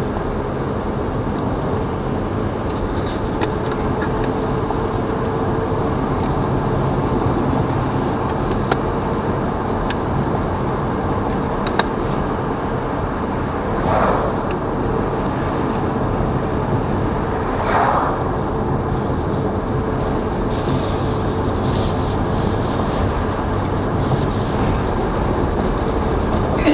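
Steady car road and engine noise heard from inside the cabin while driving, with a steady low hum. Two brief louder swells come about halfway through, a few seconds apart.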